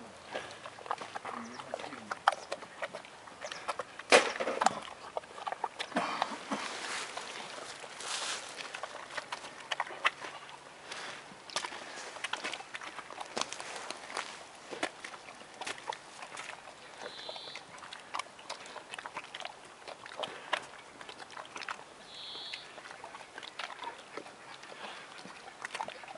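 Brown bear eating grapes: irregular wet chewing, smacking and crunching clicks as the grapes are crushed in its mouth, busiest a few seconds in.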